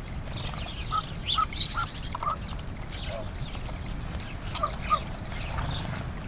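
Birds calling at a feeder: scattered high sparrow chirps, with short lower notes in a run of four in the first half and two more later.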